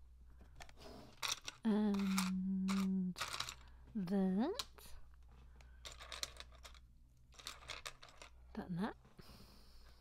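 Small plastic Lego bricks clicking and rattling as they are picked through and set down on a table. A voice makes wordless sounds over them: a held hummed note for over a second, then two short rising-and-falling "hmm"/"ah" noises, which are the loudest sounds.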